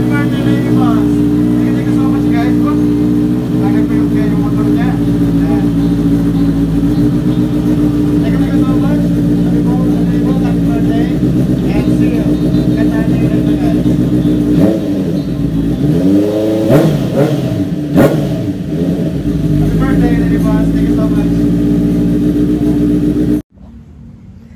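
Honda CBR650F's inline-four engine idling steadily, then revved in a few quick throttle blips about fifteen seconds in before it settles back to idle. The sound cuts off suddenly near the end.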